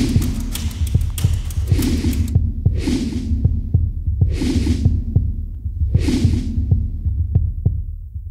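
A deep, steady throbbing like a heartbeat runs under the film's soundtrack, with heavy breaths or gasps coming every second or two.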